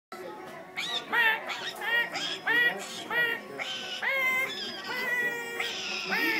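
People voicing two dinosaur hand puppets in a mock argument: a rapid back-and-forth of short, high screeching squeals, about a dozen, with a longer held squeal about four seconds in.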